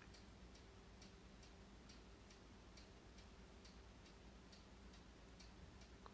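Near silence: quiet room tone with a faint low hum and faint, even ticking, about two ticks a second.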